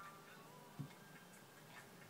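Near silence: faint room tone with a few soft ticks and one soft knock a little under a second in.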